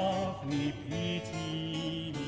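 Period-instrument early-music ensemble playing an instrumental passage: held melody notes over a plucked harpsichord accompaniment.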